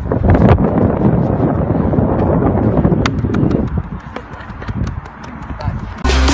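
Indistinct voices shouting, with a few sharp clicks about three seconds in.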